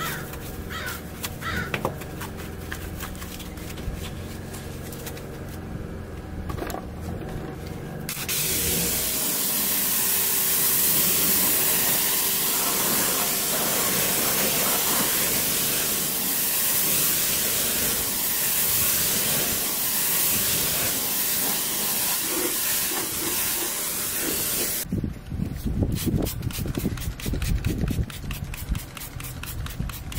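Pressure washer spraying water onto a car wheel and tyre: a loud, steady hiss that starts about 8 seconds in and cuts off at about 25 seconds. Quieter rubbing comes before it, and a run of quick sharp strokes follows it near the end.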